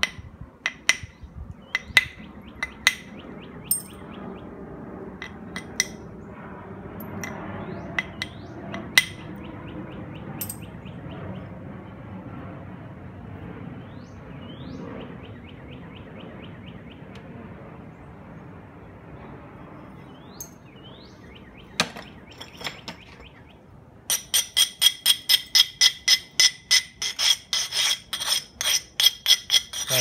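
A stone abrader scraped back and forth along the edge of a knapped stone biface, grinding the edge in a quick regular rhythm of about three strokes a second during the last six seconds. Before that come scattered sharp clicks of stone and flakes being handled on the leather lap pad.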